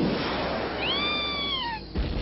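Cartoon sound effect of a hovercraft flying: a steady rushing hiss, with a whistling tone about a second in that rises slightly and then falls away.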